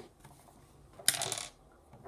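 Small hard rocks clicking together as they are handled, one short clatter about a second in.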